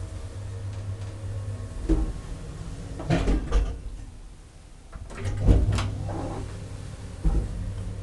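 Elevator doors working: a thump, then a rattling clatter about three seconds in, another clatter of knocks a couple of seconds later, and a last thump near the end. A low hum underneath drops away between the two clatters.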